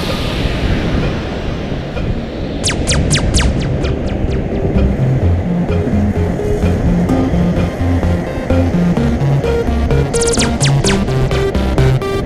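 Electronic music with a stepping bass line and a regular beat, with sharp high strikes in short runs about three seconds in and again near ten seconds.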